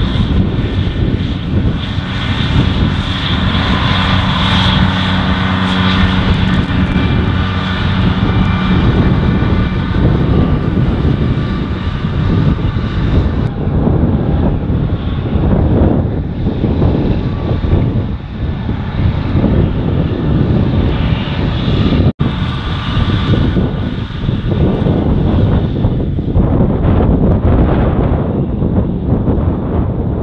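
John Deere tractors with trailed mowers, running steadily as they mow grass, heard from a distance. The engine drone is clear at first, then mixed with rough, gusting noise, with a brief cut-out about two-thirds through.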